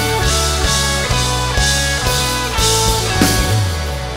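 Live band playing an instrumental passage: drum kit with regular cymbal hits, bass, electric guitar and keyboard, with a small plucked string instrument in the mix.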